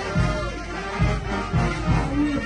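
Live brass band playing a dance tune, with sousaphones marking a steady bass beat about twice a second under the brass melody.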